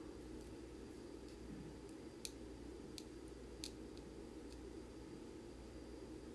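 Quiet, steady low room hum with a few faint, sharp clicks spread through it: small handling noises, such as a hand moving a metal screwdriver and bit.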